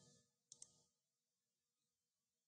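Near silence, broken about half a second in by two faint clicks close together: a computer mouse button clicking.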